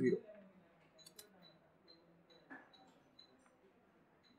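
Faint light taps and scratches as a pen and a plastic ruler are handled on a sheet of graph paper, with a couple of small clicks about one and two and a half seconds in.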